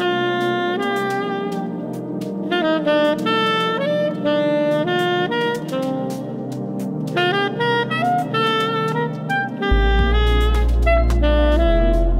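Tenor saxophone improvising a melodic jazz line in held notes and stepwise phrases over an ambient electro-funk backing track. A heavy deep bass comes in near the end and the music gets louder.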